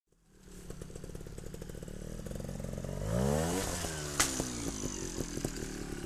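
Trials motorcycle engine running and coming closer, getting louder over the first second; about halfway through it is revved, its pitch sweeping up and then down at the loudest point. A single sharp click follows, then the engine runs low and uneven with small knocks.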